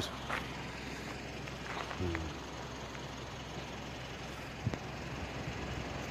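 Steady low hum and hiss of a running vehicle, with a short murmured voice about two seconds in and a single click near the end.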